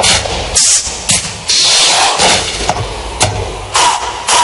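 Played-back dance-track sound effects: a run of loud noisy bursts and hits that start and stop abruptly, with no clear tune.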